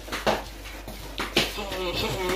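Thin plastic bag rustling and crinkling in a few short crackles as fingers work its tied top open.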